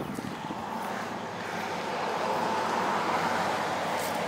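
A vehicle passing by: a steady rushing sound that swells slowly and eases off again.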